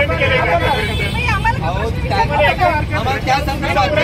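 Several people talking over one another in a heated verbal argument, with a steady low rumble of outdoor street noise underneath.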